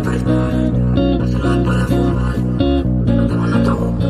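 Disco-funk Latin pop song recording with a guitar and bass groove, and a male voice singing the pre-chorus over it.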